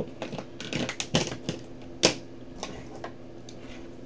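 Computer keyboard keystrokes clicking in a quick, irregular run, with one sharper click about two seconds in, then stopping.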